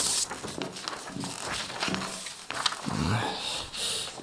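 Short rustling and clicking noises, with a man's low wordless vocal sounds, such as hums, in the middle.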